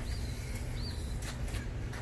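A small bird chirping twice, short high notes about a second apart, over a low background rumble.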